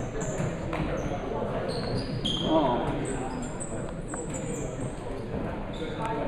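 Indistinct voices of players and spectators in a gym, with many short sneaker squeaks on the hardwood court and a few thuds. One louder call rises above the chatter about two and a half seconds in.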